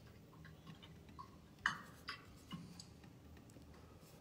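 A handful of faint, irregularly spaced clicks and taps from working a computer, the loudest a little under two seconds in.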